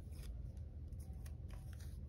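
Paper washi tape being handled for a planner page: a series of faint, thin crinkly clicks over a low room hum.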